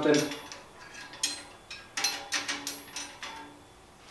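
Steel forging tools clanking against each other and the steel tool rack as one is lifted out. A few sharp metallic clanks with short ringing come about a second in, and a quick cluster follows around two seconds in.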